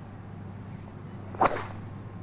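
A golfer's driver striking the ball off the tee: a single sharp crack about a second and a half in, with a brief fading tail.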